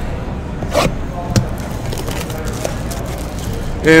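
Cardboard trading-card hobby box handled close to the microphone: a short scrape about a second in and a sharp click soon after, over a steady low hum.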